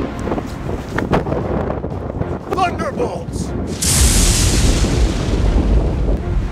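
A sudden loud rushing blast with a deep rumble starts about four seconds in and holds: a magic-spell sound effect. Before it there is rough outdoor noise and a brief vocal sound.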